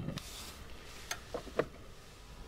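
A few faint clicks and light taps, about a second in and again shortly after, at a small portable camp stove that has just been relit.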